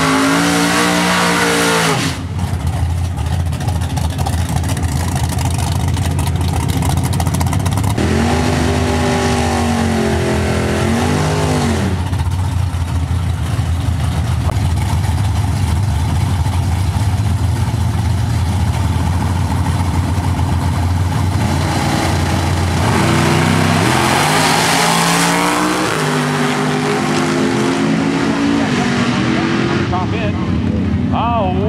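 Two drag-racing cars' engines rumbling at the starting line, revved up and down a few times while staging. About three-quarters of the way through, both launch at full throttle, the engines climbing in pitch and then fading off down the track.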